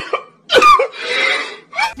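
A man crying loudly in choked sobs: a short cry, a long noisy breath, then another short cry.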